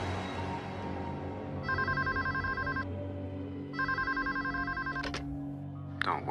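A telephone ringing twice: a rapid warbling electronic trill, each ring about a second long, over a low sustained music drone. A sharp click follows just after the second ring.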